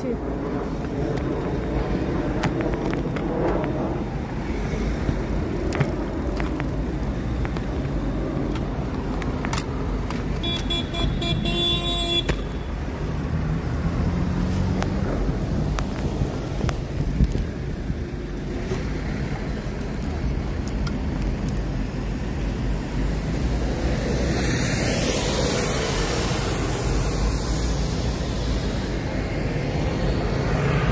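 City street traffic: a steady low rumble of passing vehicles, with faint voices around. About eleven seconds in a horn-like tone sounds for about two seconds, and there is a hiss a little before the end.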